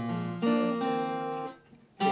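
Capoed Yamaha acoustic guitar playing an intro figure: a chord at the start and another about half a second in, both left to ring until they die away near the end.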